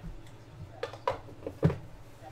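Handling sounds of a small cardboard card box and a stack of cards being set down on a hard case: a few light taps and knocks, the loudest a little past halfway.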